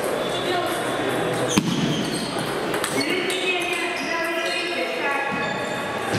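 Table tennis balls clicking sharply off bats and tables in a reverberant sports hall, with one loud sharp hit about a second and a half in and several lighter clicks after it.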